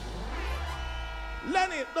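A live band's held chord dying away: a steady low bass note under several sustained higher tones, which stop about a second and a half in. A man's voice then starts speaking through the PA.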